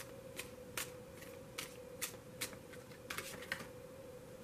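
A tarot deck being shuffled by hand: soft, irregular card clicks and flicks, roughly two a second, over a faint steady hum.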